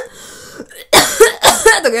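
A woman's quick run of about four short coughs, about a second in, acting out a coworker's dry, lingering cough.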